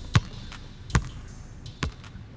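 A basketball bouncing on a hard floor three times, a little under a second apart, as an outro sound effect.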